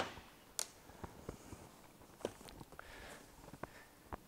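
A single sharp knock of a boat's cockpit hatch lid being shut at the start, followed by a few faint taps and soft knocks as a seat cushion is set back down and feet shift on the deck.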